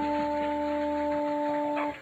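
Electric guitar's last note of a live rock song, held steady as one sustained pitched tone that cuts off shortly before the end, with the low bass dropping out a little past halfway.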